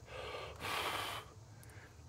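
A man breathing close to the microphone: a few soft breaths, the longest and loudest about half a second long near the middle.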